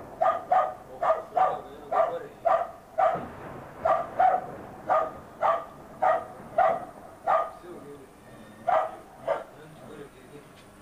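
A dog barking over and over, about two barks a second with short breaks, falling quiet near the end. This is barking set off by artillery shelling.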